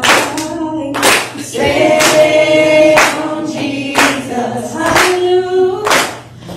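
A congregation singing a worship song together, with hand clapping on the beat about once a second.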